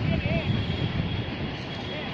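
Wind noise on the microphone, with faint high children's voices calling across the field early on.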